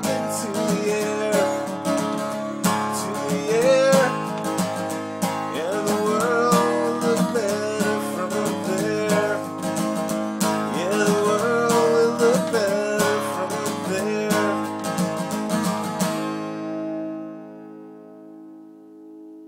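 Acoustic guitar strummed through the closing bars of a song. The strumming stops about two seconds before the end on a final chord that rings on and fades.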